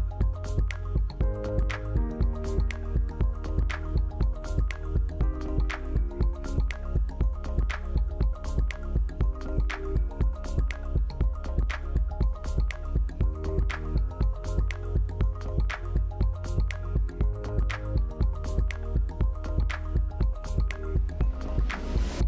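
Background music with a steady beat, held notes and a heavy bass.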